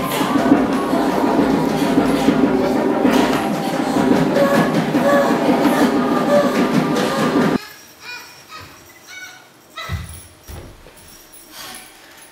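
Loud, dense din of many overlapping voices crying out over a rumbling noise, which stops abruptly about seven and a half seconds in. After that, a quiet stage with a few faint knocks.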